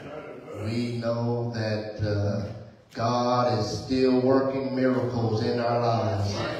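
A man's voice in slow, sung-out phrases with long held notes, amplified through a handheld microphone, with a short pause just before the middle.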